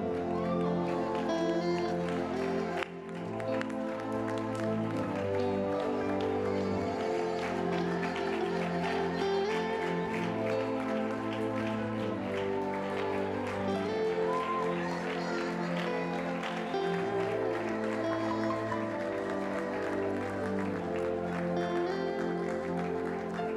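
Slow live worship music led by an electric keyboard, holding sustained chords that change every few seconds, with a brief dip in level about three seconds in.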